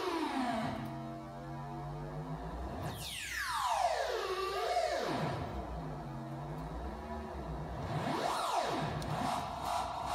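Eurorack modular synthesizer voice, shaped by Intellijel Quadrax envelopes, with a steady low drone underneath. Two long sweeps fall in tone from high to low, about three seconds apart, and a shorter rise and fall comes near the end.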